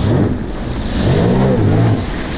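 Jet ski engine revving as the craft accelerates, its pitch rising and falling, loudest in the second half, over the rush of spray and wind on the microphone.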